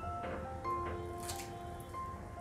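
Crisp fried samosa pastry crackling as it is torn open by hand: a few small crunches early and a louder crackle just past a second in, over background music of held notes.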